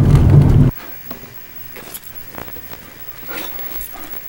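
Car engine and tyre rumble heard from inside the cabin while driving on an unpaved road, cutting off abruptly less than a second in. After that, a quiet room with a few faint knocks and clicks.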